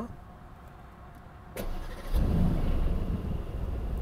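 Aston Martin Vantage F1 Edition's twin-turbo V8 started with the push button, heard from inside the cabin: a click about one and a half seconds in, then the engine catches half a second later with a loud flare and settles into a steady idle.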